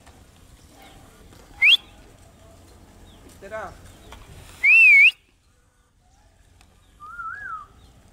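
A person whistling in short separate bursts: a quick rising whistle about two seconds in, a loud wavering whistle near the middle, and a softer warbling whistle near the end.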